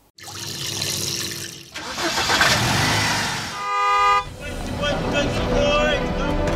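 Traffic sound effect: a car's engine and tyre noise swells twice, then a car horn honks once, briefly, about four seconds in. Ident music begins right after the honk.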